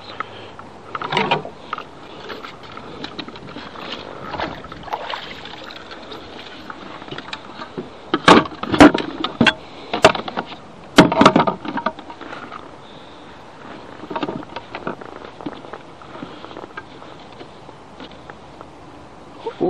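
Knocks and clatter of a bass being handled and laid on a measuring board in a kayak's cockpit, with a cluster of loud sharp knocks about eight to eleven seconds in and a few softer handling noises earlier.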